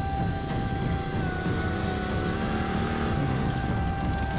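Motorcycle engine idling, a low uneven rumble, under a long held note of background music that dips slightly in pitch about a second in.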